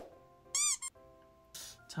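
A short, high cartoon squeak sound effect, a few quick rising-and-falling squeaks about half a second in, over light background music. A brief hissy burst follows near the end.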